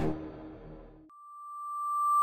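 Logo jingle music dies away, then about a second in a single steady electronic tone starts and swells louder, the held opening note of a synthesizer intro theme.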